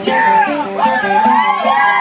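Acoustic guitar strummed live with sung melody lines over it.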